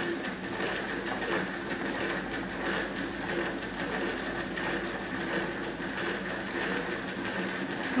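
Hand-cranked plastic rotary food chopper turned steadily, its gears and blades giving a continuous rattling whir as they chop vegetables.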